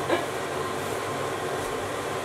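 A fan running with a steady whooshing hum, clearing cooking smoke from the kitchen. There is a brief voiced "mm" right at the start.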